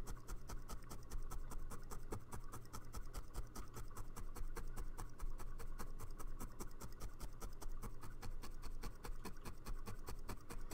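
A felting needle stabbing wool into felt on a felting mat, in a rapid, even run of soft scratchy pokes, several a second. A steady low hum lies underneath.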